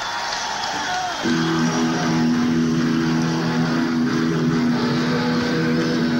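Live hard-rock band with electric guitars, heard on a 1970s audience recording: sliding, bending notes, then about a second in a louder held chord that rings on.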